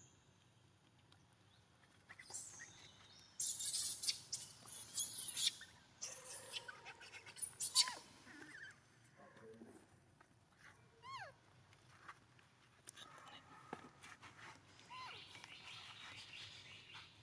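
Outdoor sound with bursts of rustling noise in the first half, then a few short, high-pitched falling animal calls, one about two-thirds of the way through and a shorter one near the end.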